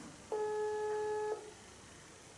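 Ringback tone of an outgoing phone call, heard from a smartphone's speaker: one steady beep lasting about a second, the call still ringing unanswered.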